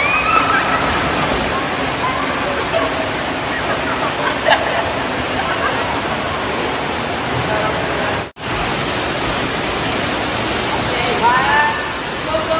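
Steady rush of water in an indoor waterpark: slide water and waterfall features pouring into the pools, with splashing and scattered voices and shouts in the background. The sound breaks off for a moment a little past the middle, then the water noise carries on.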